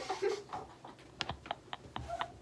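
Typing on a laptop keyboard: a quick, uneven run of key clicks in the second half.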